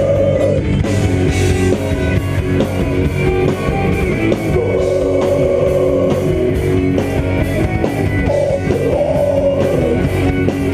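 Heavy metal band playing live: distorted electric guitar, bass guitar and a Yamaha drum kit, loud and dense, with harsh vocals shouted into the microphone over them.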